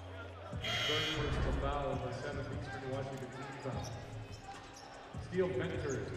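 Basketball arena sound on the court during a stoppage: a basketball bouncing on the hardwood over the murmur of crowd and players' voices, with a swell of crowd noise about half a second in.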